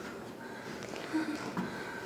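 A quiet pause in a small room: low room tone with a few faint, brief voice sounds about a second in.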